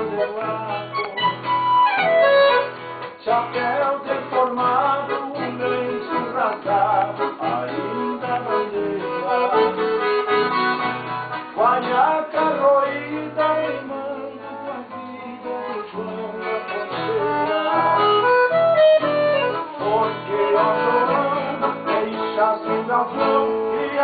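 Piano accordion and acoustic guitar playing a gaúcho regional tune together, the accordion carrying the melody over a steady, regular bass-and-chord rhythm.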